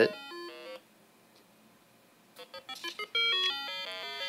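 Arduino Uno playing a fast run of stepped, buzzy square-wave beeps through a small speaker. The beeps cut off about a second in as the board is reset; after a silence and a few clicks, the note sequence starts again from the beginning near the end.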